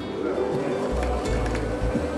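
Background music playing over a blender's steady motor hum as it begins mixing tomato, bread and oil at low speed.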